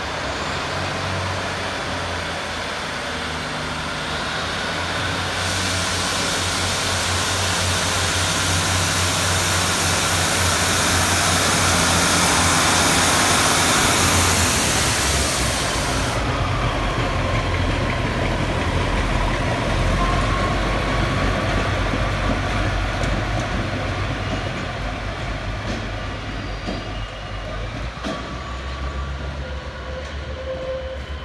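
GWR Class 150 Sprinter diesel multiple unit pulling away and running past, its diesel engine note building to a peak about halfway through, with a hiss over the middle part. A faint drawn-out wheel squeal follows as it goes away over the curved track.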